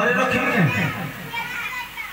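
Mostly speech: an actor's spoken stage dialogue, the voice fading out near the end.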